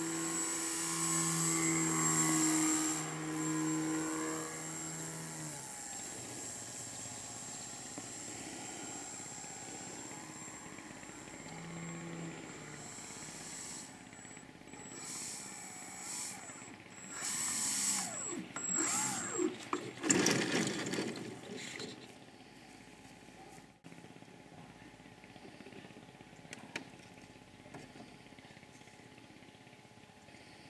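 A model airplane's motor and propeller run with a steady hum for the first few seconds as it flies low, then fade away. Some seconds later come several short, louder noisy bursts.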